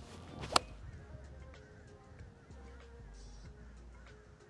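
A 4-iron swung at a golf ball off the tee: a brief swish leading into one sharp click of the clubface striking the ball about half a second in.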